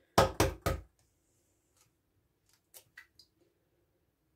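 An egg knocked three times in quick succession against the rim of a ceramic bowl to crack its shell, followed about three seconds in by a few faint clicks as the shell is pulled apart.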